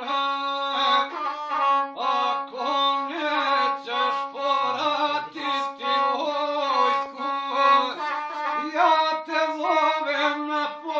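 A gusle, the single-string bowed folk fiddle, bowed without a break while a man sings along to it.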